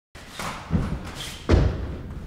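Two heavy thuds, the second, about a second and a half in, the louder.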